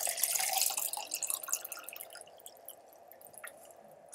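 Water pouring from a plastic pitcher into a drinking glass. The pour thins out and stops within the first two seconds, leaving a few faint drips and small ticks.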